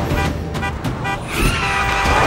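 Vehicle horns honking in about five quick short toots over low traffic rumble, then a longer held tone near the end.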